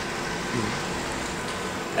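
Steady street background noise: a low, even hum of distant traffic.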